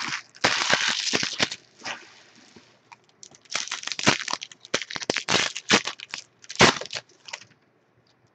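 Foil trading-card pack wrappers crinkling and tearing: a burst of crackling about half a second in, then a longer run of crinkling and crackling from about three and a half seconds to near the end as the next pack is torn open.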